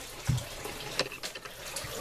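Water running steadily in an aquaponics fish tank, with a soft knock a quarter second in and a sharp click about a second in.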